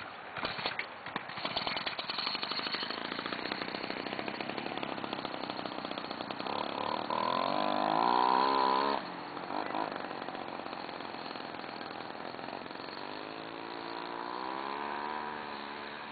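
Homelite ST-155 25cc two-stroke string-trimmer engine driving a homemade bike by a friction spindle, popping unevenly at first, then running with a buzzing note that climbs in pitch as the bike speeds up. It cuts back suddenly about nine seconds in, runs quieter, then climbs again near the end as the bike moves away.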